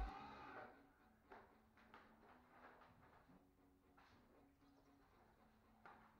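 Near silence: faint room tone with a faint low hum and a few faint clicks.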